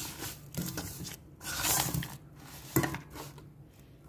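Wooden chopsticks mixing raw pork bones with salt, seasoning and oil in a nonstick pot: irregular soft scrapes and squelches with a few light clicks of the sticks against bone and pot, as the seasoning is worked in.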